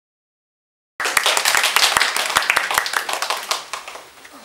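Total silence for the first second, then a group of people applauding, cutting in suddenly and thinning out near the end.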